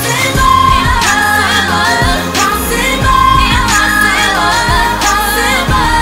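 A woman singing a pop ballad over a backing track with a steady beat.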